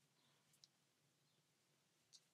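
Near silence: faint room tone with one small click a little over half a second in.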